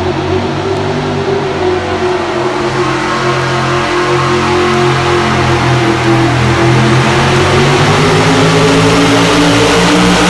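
Pulling truck's engine running hard under load as it starts dragging the weight-transfer sled down the dirt track. The pitch wavers a little and the sound grows steadily louder.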